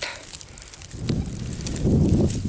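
Fingers rubbing and handling a small dug-up metal find close to the microphone, giving an uneven low rumble and rustle that picks up about a second in.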